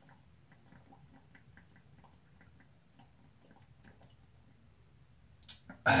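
A man chugging malt liquor straight from a 40-ounce glass bottle: faint, quick swallows, about four or five a second. Near the end a sharp breath comes as the bottle comes down.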